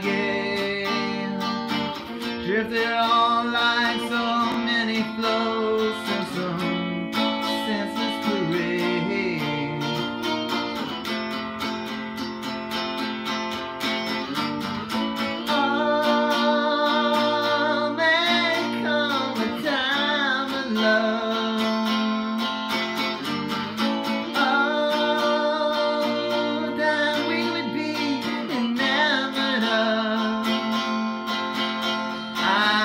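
Electric guitar strummed in chords, with a man's singing voice carried over it in a slow, drawn-out melody.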